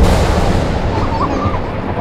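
A sudden loud cinematic impact hit, a trailer boom, followed by a long noisy rumbling tail that slowly fades.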